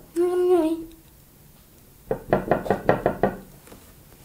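A short hummed vocal sound, then a quick run of about eight light knocks in just over a second.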